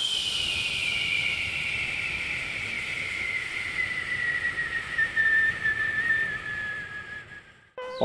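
Sound effect of an airplane passing overhead: a jet's whine falling slowly and steadily in pitch over a rushing noise, cutting off abruptly near the end.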